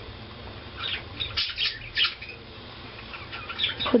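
Short, irregular scratchy rustles as a toothpick spreads craft glue along lace trim and hands handle the fabric, in a cluster about a second in and again near the end.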